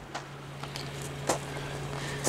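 A vehicle engine running steadily nearby: a low, even hum over a background hiss, with a few faint clicks.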